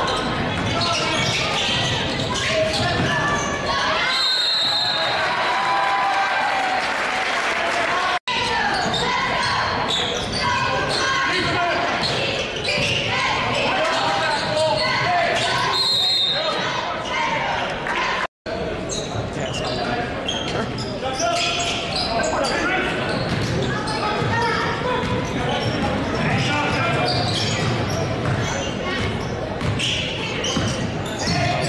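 Basketball being dribbled on a hardwood gym floor during live play, with indistinct crowd and player voices echoing in a large gym. The sound cuts out briefly twice.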